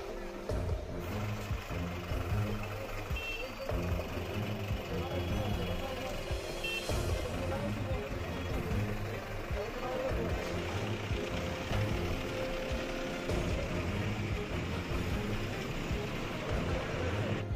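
Busy street noise: a vehicle engine running under indistinct voices of people nearby, with a couple of short high beeps a few seconds in.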